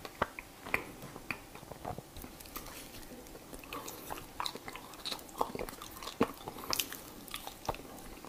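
Matcha-powdered ice being bitten and chewed close to a clip-on microphone: a string of irregular, sharp crunches.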